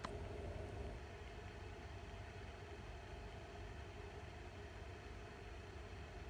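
Quiet room tone: a steady low hum with a faint even hiss and no speech.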